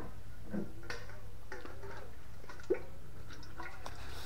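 Faint handling noises as a metal mini beer keg is taken down from a wooden shelf: soft clicks and taps, with one sharper knock about two-thirds of the way through, over a steady low hum.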